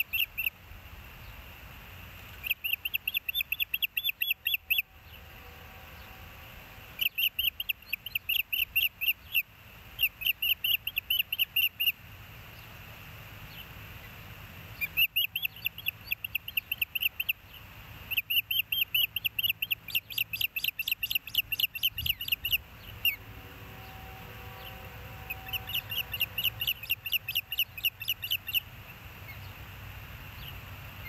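Osprey calling: repeated bouts of rapid, high, sharp chirps, several a second, each bout lasting a second or two with short pauses between.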